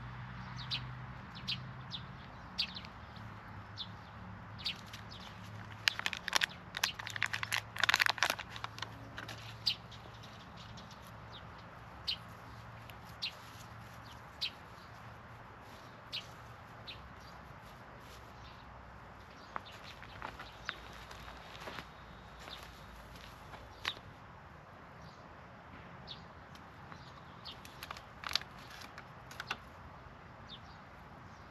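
Hands pressing loose potting soil around a seedling and handling plastic nursery pots: scattered short rustles and clicks, densest and loudest about six to nine seconds in, over a faint low hum in the first half.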